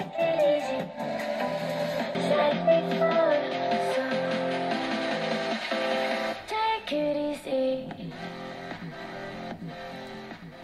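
Pop music with guitar played through a homemade Bluetooth speaker from a smartphone. The music gets quieter in the last couple of seconds.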